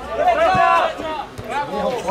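Men talking close to the microphone, with two short knocks under the talk.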